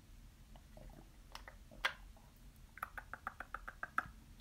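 Light clicks and taps of makeup products and containers being handled on a desk, ending in a quick run of small ticks, about eight a second.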